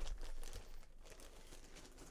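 A soft thump, then faint rustling and crinkling as craft supplies are handled and rummaged through.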